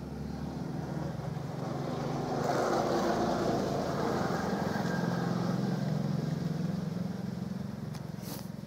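A motor vehicle's engine running as it passes by, growing louder to a peak about three seconds in, then slowly fading.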